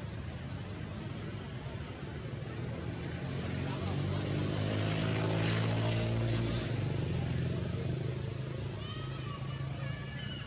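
A motor vehicle passing by: its low engine hum grows louder over a few seconds, peaks about midway, then fades. A few short high chirps come near the end.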